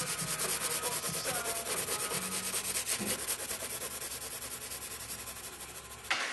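A fast, even rasping or scratching rhythm, about ten strokes a second, slowly fading and ending abruptly.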